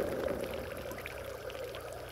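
Water splashing, with spray pattering down onto a pond's surface and easing off over the two seconds.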